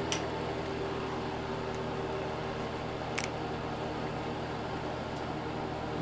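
Pelonis utility space heater running on its 1300-watt heat setting, its fan giving a steady low hum. Two brief clicks, one just after the start and one about three seconds in.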